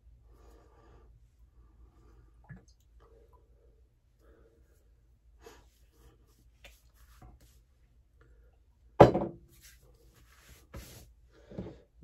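Hands rubbing and patting a splash of lime aftershave onto the neck and face: soft rustling pats, then one loud sharp sound about nine seconds in and a few smaller ones just after.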